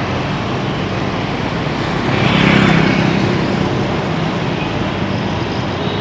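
Street traffic: vehicle engines with a steady low hum and road noise, one vehicle getting louder and passing about two to three seconds in.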